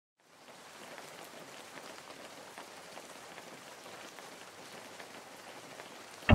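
Soft, steady rain with scattered single drops ticking through it, fading in just after the start.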